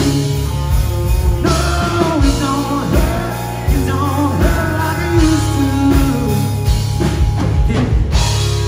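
Live rock band playing: electric guitars, bass guitar and drum kit, with a man singing lead into the microphone.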